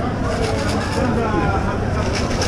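Busy market crowd: several people talking in the background over a steady low rumble.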